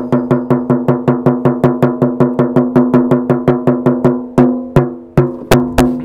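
A tightly stretched 13-inch goat-rawhide frame drum beaten by hand in a fast, even pulse of about five strokes a second, each stroke ringing with the same fairly high pitch. A little past four seconds in, the beat slows to a few harder, spaced strikes.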